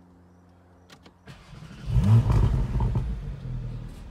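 Porsche 718 Boxster Spyder's 4.0-litre naturally aspirated flat-six starting: a short crank, then about two seconds in it catches with a loud rising flare of revs and settles to a steady idle.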